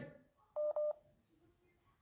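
Two short electronic beeps in quick succession, a little over half a second in, the kind of alert tone a phone gives.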